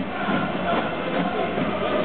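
A large football crowd singing a supporters' chant in unison, a steady massed wall of voices.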